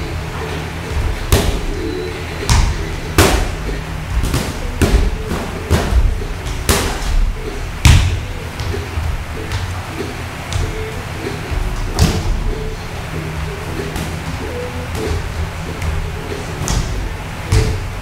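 Boxing gloves landing in sparring: irregular sharp thuds and slaps at uneven gaps, the loudest about eight seconds in, with music playing underneath.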